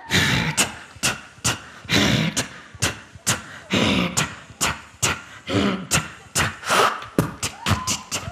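Human beatboxing into a handheld microphone: sharp snare-like hits about twice a second with breathy, buzzing mouth sounds between them, the hits coming quicker near the end.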